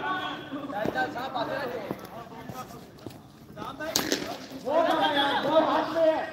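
Men's voices talking and calling out, with one sharp crack about four seconds in.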